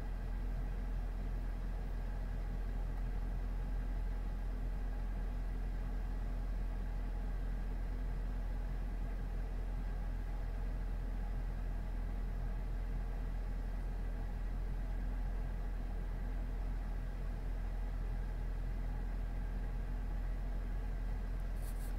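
A steady low hum with a faint buzz above it, unchanging throughout.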